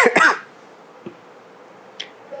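A person coughing: two short, loud coughs right at the start, then quiet room tone.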